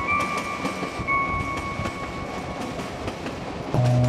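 A train running, heard from on board: a steady rumble with rapid wheel clicks over the rails. Faint held music notes sit under it, and louder mallet-percussion music comes in near the end.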